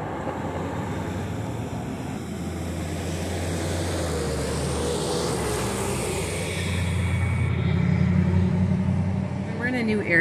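Street traffic: a motor vehicle's engine runs with a low hum, growing louder toward the end as it comes closer.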